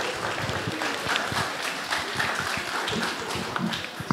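Audience applauding: a steady spatter of many hand claps that dies away at the end.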